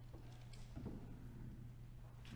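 Quiet church interior: a steady low hum with a few faint knocks and shuffles of people moving, and a brief low thump about a second in.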